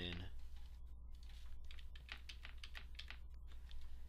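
Computer keyboard keys, likely the arrow keys, tapped in a quick uneven run of about three or four presses a second, starting about a second in.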